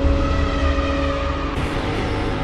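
Cinematic intro sound effect: a deep rumble with a held droning tone that stops about one and a half seconds in, followed by a brief rush of hiss.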